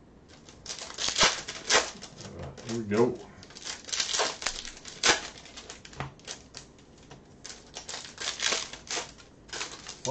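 Bowman Chrome trading-card pack wrappers crinkling and tearing as packs are ripped open, with cards being handled and flicked through: an irregular string of crackles and clicks.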